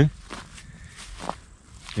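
Footsteps of a person walking over mown grass, quiet and irregular.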